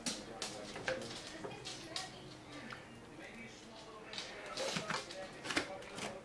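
A ladle spooning saucy ground beef and vegetables onto a plate of noodles: scattered soft taps and clicks of the ladle against the plate, with a few more near the end.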